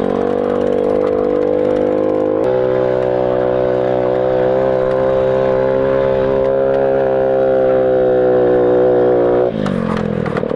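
Small motorcycle engine running at a steady high rev under throttle while riding, with a change in its note about two and a half seconds in. The revs drop off suddenly near the end as the throttle is closed.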